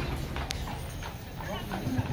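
Hooves of a carriage horse clip-clopping on the street as a horse-drawn carriage passes, with a sharp hoof strike about half a second in.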